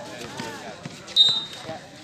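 A basketball bouncing on an outdoor concrete court among players' voices. About a second in comes the loudest sound, a short, sharp, high-pitched squeak.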